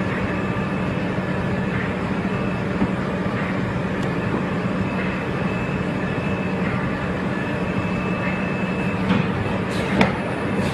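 A UV750 flat UV curing conveyor machine running, giving a steady hum with a faint high steady tone over it. A couple of sharp knocks come near the end.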